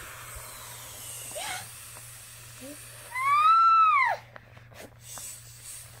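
Breath hissing as a ripped mylar character balloon is blown up by mouth. About three seconds in, a loud high squeal rises and falls in pitch for about a second.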